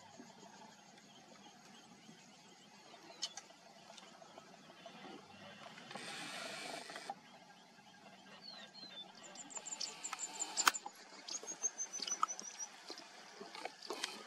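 Quiet grassland ambience, with a brief rush of noise about six seconds in. Near the end small birds call in quick series of high chirps, the second series stepping down in pitch, and there is one sharp click.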